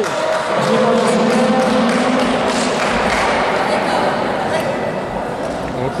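Spectators shouting and cheering at once, a loud mass of voices, with a few drawn-out yells in the first couple of seconds.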